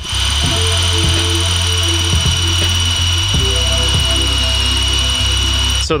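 Electric drill running steadily with a high whine, boring through a pressed-on crank pulley into the crankshaft for locating pins, with background music. It cuts off just before the end.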